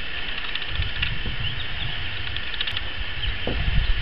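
Soft, steady rustling of a rock pigeon's skin and feathers being peeled back by hand, over continuous background noise.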